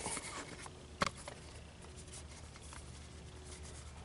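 Quiet handling of a plastic cup holder tray as a new rubber insert is pressed onto it, with one sharp click about a second in.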